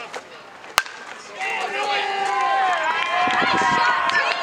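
A bat strikes a baseball with one sharp crack about a second in. Spectators then shout and cheer loudly.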